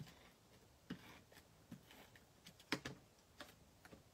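A few soft, separate clicks and taps as a handheld tape runner lays adhesive on red cardstock and the card pieces are handled, the sharpest click a little under three seconds in.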